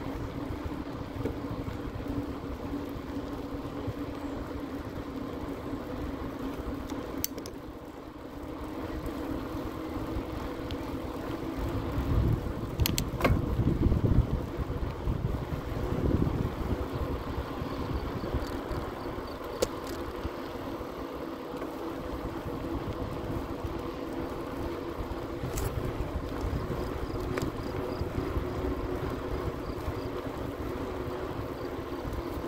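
Bicycle riding along an asphalt path: steady tyre and wind noise with a faint low hum underneath. Wind buffets the microphone harder for a few seconds around the middle, and there are a few sharp clicks.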